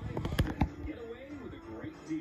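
A quick run of sharp pops and thuds over the first half second or so, then the television broadcast's voices and music.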